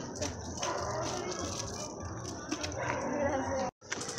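Chatter of a small group of children and adults, several voices overlapping at once with small clicks and knocks; the sound cuts out completely for a moment near the end.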